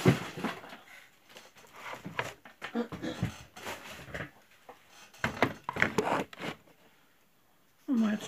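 Rustling and knocking of household objects being handled and shifted about, in irregular bursts, going quiet for about the last second.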